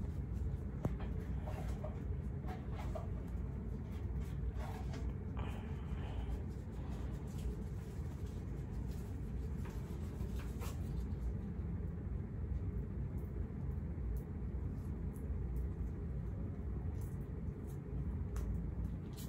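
Steady low room rumble with faint rustling and a few light clicks scattered through the first half.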